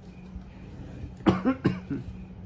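A man coughing three times in quick succession, a little over a second in.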